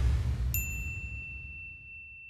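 Title-card sound effect: the low rumbling tail of a whoosh fades out, and about half a second in a single bright bell-like ding strikes and rings on as one clear high tone.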